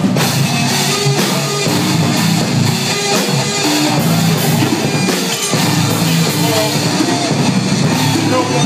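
Heavy metal band playing live and loud: distorted electric guitars, bass and a drum kit, with a vocalist screaming into the microphone. The sound is dense and unbroken, with little deep bass.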